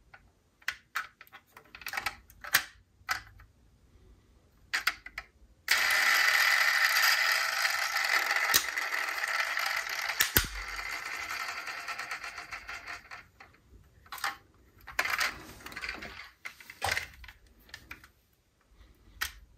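Small clicks and taps of a diecast model car being handled, its opening doors and hood moving, then a steady mechanical noise that starts suddenly about six seconds in and fades away over some eight seconds, with a few more clicks near the end.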